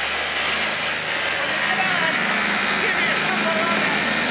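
Small engine of a 1970 Arctic Cat Kitty Cat children's snowmobile running steadily as the sled moves along.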